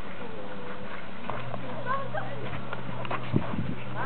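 Scattered children's voices calling and shouting across an outdoor playing field, with a single sharp knock a little after three seconds in.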